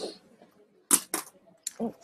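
Three short, sharp clicks in quick succession, the first the loudest, followed by a woman's voice starting a word.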